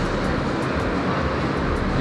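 Steady background noise of a large gym: an even rushing hiss over a low hum, with a few faint ticks.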